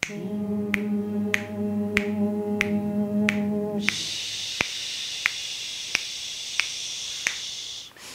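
Finger snaps keep a steady beat of about one every 0.6 s while a group of voices does a breathing exercise. For about four seconds they hum one steady held note, then they switch to a long hissed 'sss' out-breath that lasts to the end.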